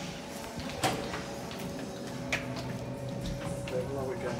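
Steady hum with faint background music, broken by a sharp knock about a second in and a lighter click a second and a half later.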